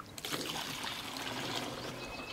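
Gasoline pouring in a steady trickling stream out of a Honda lawn mower's plastic fuel tank into a plastic gas can, draining the fuel that was shaken to flush out dirt inside the tank. It starts a moment in and keeps an even level.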